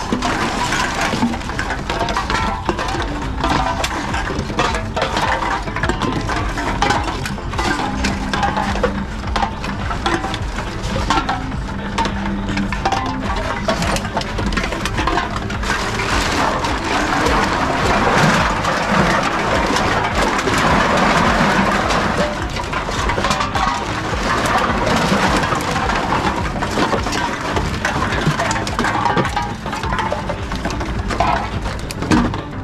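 Aluminium cans and plastic bottles clattering and clinking continuously as they are grabbed from a pile and fed one after another into reverse vending machines.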